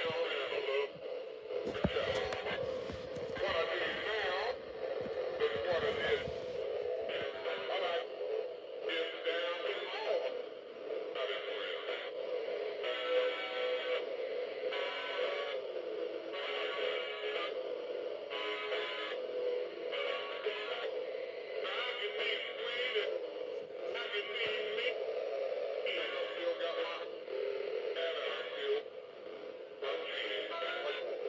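Battery-powered animated singing figure playing its song through its small, thin-sounding speaker: a male voice singing over a steady beat while running on low batteries.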